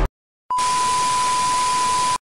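Music cuts off abruptly. About half a second later a television test signal starts: a steady high beep over a loud hiss of static.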